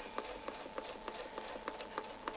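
Domestic sewing machine stitching slowly during free-motion ruler work, its needle clicking evenly about five times a second over a steady motor whine.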